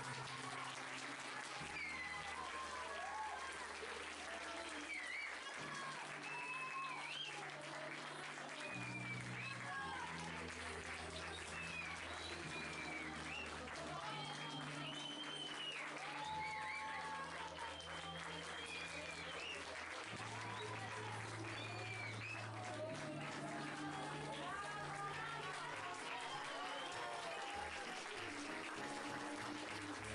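An audience clapping with many voices calling out, over music with sustained low notes that change every couple of seconds.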